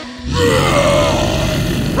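A cartoon Tyrannosaurus rex's roar: one long growl that starts about a third of a second in and slides down in pitch, over background music.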